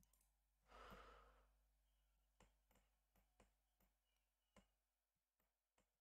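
Near silence: a faint exhaled breath about a second in, then a few faint, scattered clicks from computer input devices.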